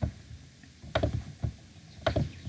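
A few sharp clicks of a computer mouse: one at the start, a quick pair about a second in, and one more shortly after.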